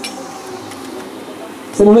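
Quiet outdoor background with faint distant voices and a single sharp click at the start. A man's commentary voice cuts in loudly near the end.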